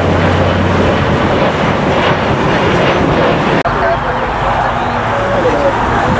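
Twin-engine Embraer regional jet climbing out after takeoff: a steady, loud jet noise that cuts off abruptly about three and a half seconds in. It gives way to a steady background of outdoor noise.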